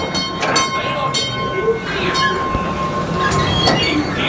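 Mine-ride train running on its track: a steady high squeal lasting most of these seconds, with a few sharp metallic clanks.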